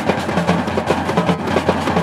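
Drums and percussion playing a fast, busy rhythm, with many quick strokes over a steady low hum.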